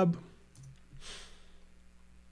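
A few faint computer keyboard clicks, keys pressed to paste and enter a web address, and a short breath about a second in.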